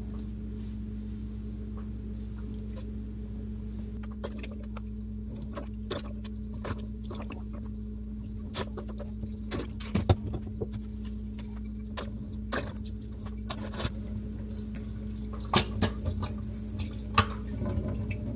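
Rice-water hair rinse poured from a squeeze bottle over wet hair, running off and dripping into a stainless steel sink in scattered, irregular drips and splashes. The drips come more often in the second half.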